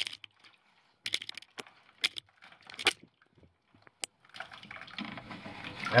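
Wet limescale chunks being scraped and pulled by hand out of an electric water heater tank that is heavily clogged with scale: scattered clicks and clinks of hard scale. Near the end, a growing rush of water-like noise.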